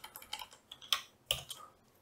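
Computer keyboard being typed on: a quick run of about ten uneven key clicks.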